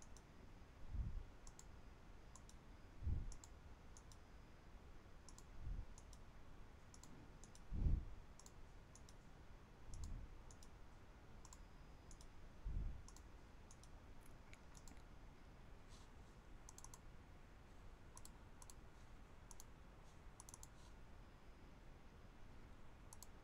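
Faint, scattered clicks over quiet background noise, with soft low thumps every two to three seconds in the first half.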